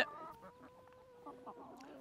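Faint call from a young laying hen among a flock of pullets: one drawn-out, level note lasting about a second and a half.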